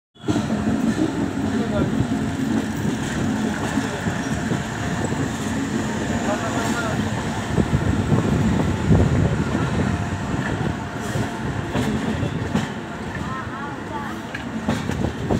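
Moving passenger train heard from its open doorway: a steady rumble of wheels on rails mixed with wind noise, with voices in the background.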